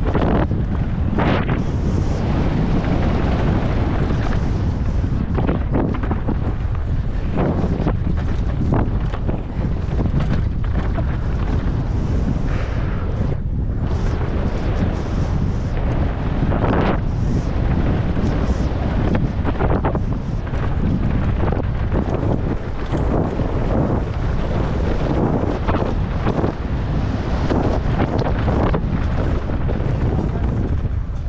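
Mountain bike ridden fast downhill over a dry dirt track. Loud, steady wind rush on the camera's microphone, broken by frequent short knocks and rattles from the bike over rough ground.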